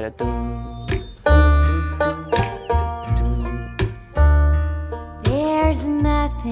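Bluegrass-style band music built on a prominent bass line, with heavy bass notes about once a second under banjo and other plucked strings. A woman's singing voice comes in near the end.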